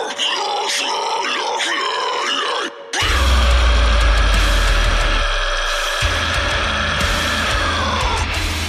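Heavy metal track. It opens with wavering, pitch-bending sounds and no bass, drops out briefly just before the three-second mark, then the full band comes in with heavy, deep bass under a long held high note that bends downward near the end.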